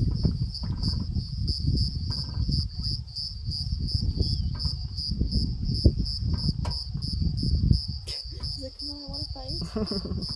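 An insect, cricket-like, calling steadily in high pulses about four times a second, over a low, uneven rumble.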